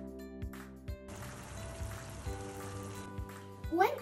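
Background music with a steady beat; about a second in, chopped onions hit hot olive oil in a frying pan and sizzle for about two seconds, then the sizzle stops.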